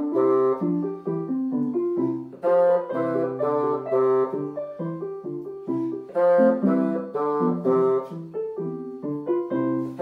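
Bassoon and electronic keyboard playing an easy bassoon solo piece together, the bassoon's reedy melody of short separate notes over a piano-sound accompaniment, in short phrases.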